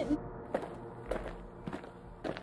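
A few light taps, a little over half a second apart, from plastic Littlest Pet Shop figurines being handled and moved by hand.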